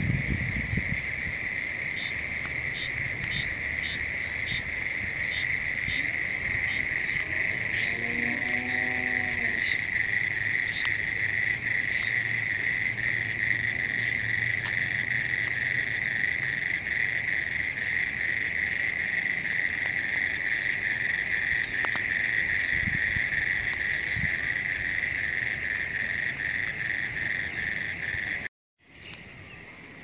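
A steady, shrill chorus of calling insects holding one high pitch, with scattered sharp clicks over it and a brief lower-pitched call about eight seconds in.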